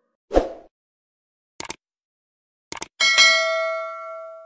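Subscribe-button animation sound effects: a short swoosh, then two quick double clicks about a second apart, then a bell ding about three seconds in that rings on with several steady tones, fading slowly.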